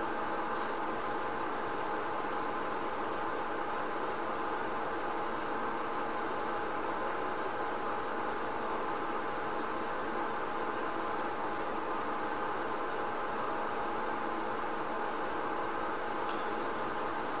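A steady hum with hiss and a faint high whine, unchanging throughout.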